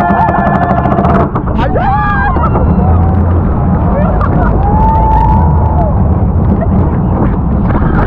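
Riders screaming on a roller coaster as the train goes over the top and down the drop, over a loud steady rumble of the train running on its track and the rushing air. A long held scream at the start, short rising and falling cries about two seconds in, and another long scream around the middle.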